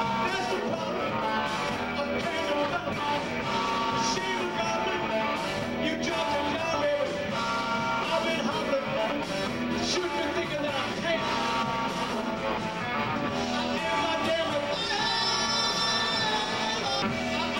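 Rock band playing live on electric guitars, bass guitar and drum kit, loud and steady throughout.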